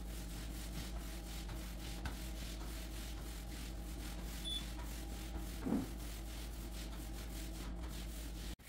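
Soft rubbing sweeps of a long-handled roller spreading floor finish over hardwood, over a steady low hum. A brief knock a little before six seconds in is the loudest moment.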